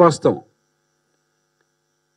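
A man's voice through a handheld microphone trails off about half a second in, then near silence.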